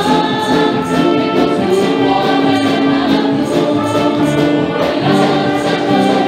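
A group of women singing a Spanish-language worship song into microphones, with held sung notes over instrumental accompaniment with a steady beat.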